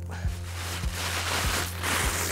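Brown kraft packing paper being pulled out and crumpled, a rustling that grows louder toward the end, over background music with a steady beat.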